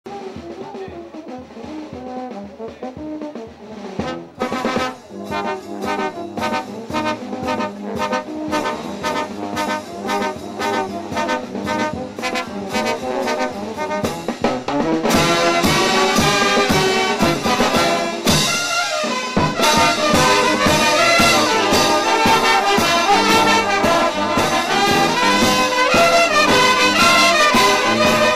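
Andean brass band of trumpets, trombones, saxophones, baritone horns and sousaphone playing a tune over a bass drum. It opens softer, the drum beat comes in about four seconds in, and the full band plays louder from about halfway through.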